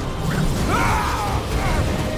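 Mechanical, metallic film sound effects over a steady low rumble, with a wavering creak about a second in.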